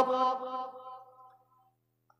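A man's voice over a loudspeaker system holds the last chanted note of a sermon phrase, which fades out over about a second and a half. After that there is near silence with a faint low hum.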